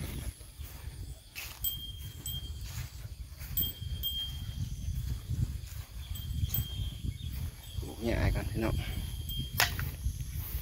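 Rustling and low rumbling in a grassy field among grazing cattle, with a few sharp clicks and a brief pitched sound about eight seconds in.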